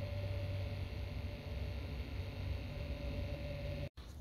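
A steady low electrical hum with a faint steady whine above it, cutting off abruptly just before the end.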